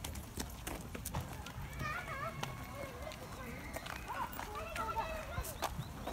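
Footsteps of people walking on a paved path, a string of short irregular steps, with faint voices talking.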